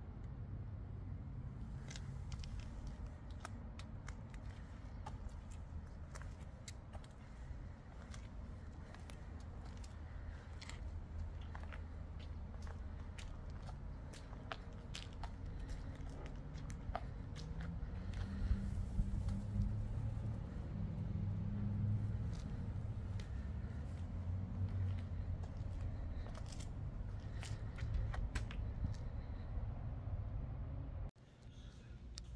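Footsteps scuffing and crunching on a concrete driveway over a steady low rumble of wind and handling on the microphone. A low hum swells for several seconds past the middle, then settles.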